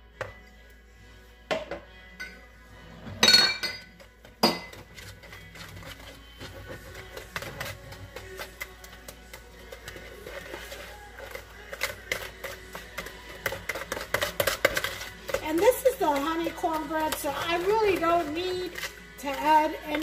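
A wire whisk beating cornbread batter in a mixing bowl, rapid clicking strokes from about six seconds in, after a few separate clinks and knocks as jalapeños are tipped in from a glass jar. Near the end a melody comes in over the whisking.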